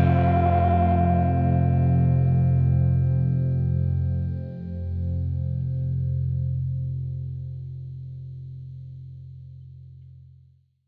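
The last chord of a rock song ringing out on effects-laden, distorted electric guitar with chorus and echo over held low notes. It dips briefly about four and a half seconds in, then fades away slowly.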